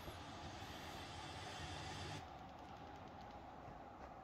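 Faint, steady background hiss of outdoor ambience with no distinct events, dropping a little about two seconds in.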